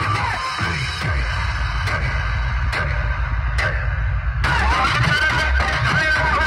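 Loud DJ music with heavy bass from a large outdoor speaker stack. About a second in the treble drops away, with a few short swept hits, and the full sound comes back about four and a half seconds in.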